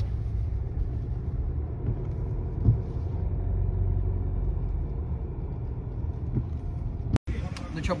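Car cabin noise while driving slowly: a steady low rumble of engine and road heard from inside the car, with a brief bump a few seconds in. It stops abruptly near the end.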